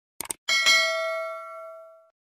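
Subscribe-button sound effect: a quick double click, then a bright notification-bell ding about half a second in, struck twice in quick succession and ringing out, fading over about a second and a half.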